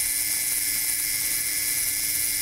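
Leica M4's mechanical self-timer running down: the steady, even buzz of its clockwork escapement, keeping the same pace without weakening.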